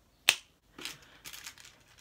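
A single sharp snap about a third of a second in, then a few soft rustles of hair being handled and gathered up into a bun.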